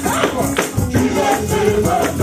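Live gospel praise music: several women singing together into microphones over keyboard and drums, with a tambourine played in rhythm.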